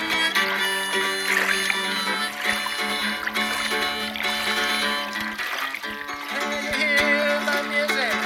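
Hohner Blues Harp harmonica in D playing a blues line over a strummed Yamaha GL1 guitalele, with some notes bent and wavering, and a short lull just past the middle.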